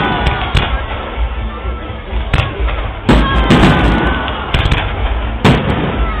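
Fireworks display: aerial shells bursting with a run of sharp bangs at irregular intervals, several close together around three to four seconds in.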